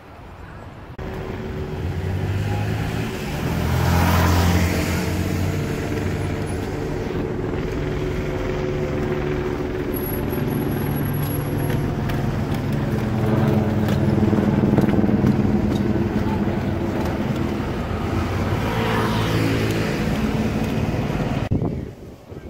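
Steady engine noise, swelling to a louder rush about four seconds in and again near the end.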